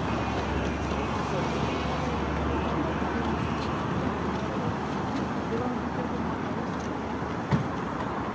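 Steady road traffic on a busy city street, cars and buses going by, with people's voices in the background. A single short knock near the end.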